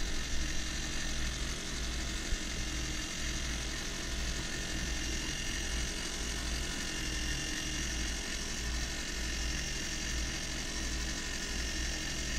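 Brass gear works of an orrery turning, giving a steady mechanical hum and whir.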